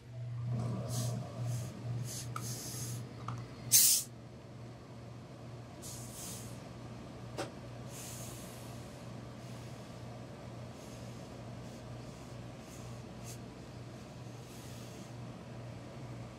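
Steam iron pressing a suit jacket: several short hisses of steam, the loudest about four seconds in, over a steady low hum that starts when the pressing begins.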